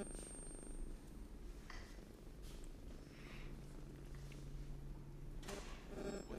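Quiet room tone: a faint low rumble, joined by a steady low hum from about three seconds in until shortly before the end.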